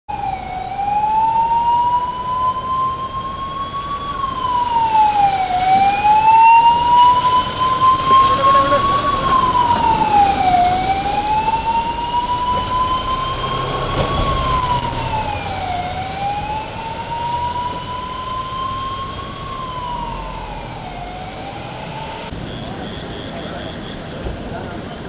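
Fire engine siren wailing, rising slowly and dropping quickly in a cycle of about five seconds, repeating four times before cutting off near the end.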